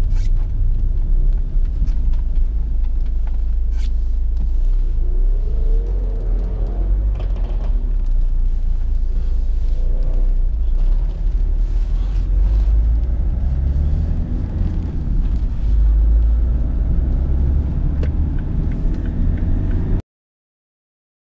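Inside the cabin of a 2010 Chevrolet Captiva on the move: its 2.0 VCDi four-cylinder turbodiesel and the road noise make a steady low rumble, with the engine note rising about five to seven seconds in. A sharp click comes near the start and another about four seconds in.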